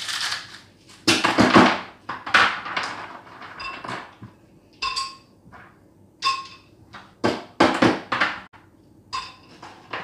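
Ice cubes dropped into a glass blender jar onto fruit: an irregular run of clattering knocks and clinks, a few with a short ringing tone from the glass.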